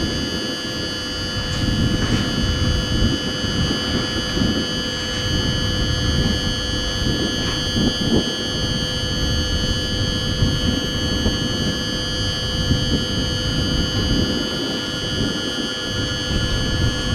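X 76500 diesel AGC railcar rolling slowly into the station: a low, steady rumble of engine and wheels. Under it runs a steady electrical hum made of several fixed tones.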